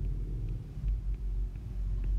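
Steady low background rumble in a pause between speech, with a few faint ticks.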